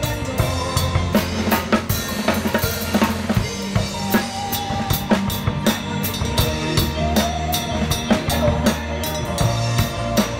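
Drum kit played live in a rock song, close to the microphone: steady snare, bass drum and crash cymbal hits, with the band's low bass notes and held pitched parts underneath.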